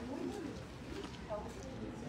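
An indistinct, low voice, bending in pitch with no clear words, over faint room noise.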